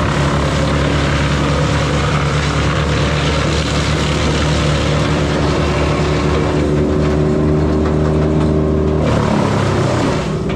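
Engine of a grapple-equipped machine running steadily under hydraulic load as the grapple works, its note shifting about nine seconds in.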